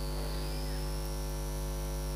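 Steady electrical mains hum, a low buzz with a faint high whine above it, from the amplified microphone and sound system.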